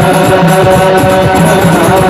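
Hadrah ensemble performing sholawat: hand-struck frame drums (rebana) beating a fast, even rhythm, with a sung melody carried over the top through microphones.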